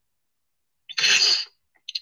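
One short, loud breathy burst from a man's mouth and throat, about half a second long, starting about a second in, like a forceful exhale or cough, followed by a faint mouth click near the end.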